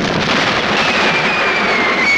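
Battle noise from cannon fire as a dense, steady roar. Under a second in, a high whistle starts and falls steadily in pitch, like an incoming artillery shell.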